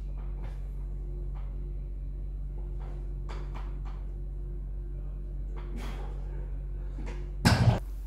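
Faint scattered clicks and knocks from iron dumbbells and a weight bench during a seated alternating dumbbell shoulder press, over a steady low hum. A louder knock comes about seven and a half seconds in.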